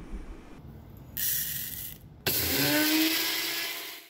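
Small electric grinder grinding flax seeds into flax meal: a short burst of about a second, then a longer run with the motor pitch rising slightly, fading out near the end.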